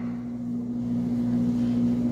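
A steady low hum with a faint background hiss, unchanging throughout.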